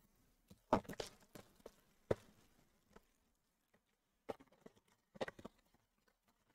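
A small cardboard trading-card box being handled on a table: a few light, scattered knocks and scuffs, a cluster about a second in, one sharper tap at two seconds, and more near the end.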